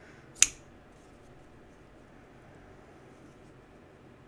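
Civivi Vision FG folding knife flicked open: a single sharp click about half a second in as the blade swings out and locks.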